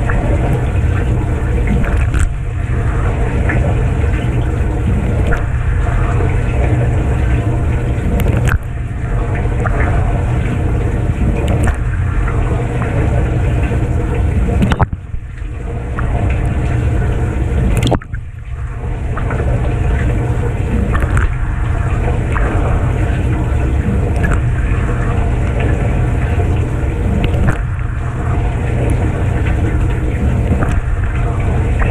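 Kenmore 587.14132102 dishwasher in its wash phase, heard from inside the tub. The circulation pump runs steadily under a rush of water sprayed from the bottom wash arm onto the dishes and racks. The spray briefly drops twice near the middle.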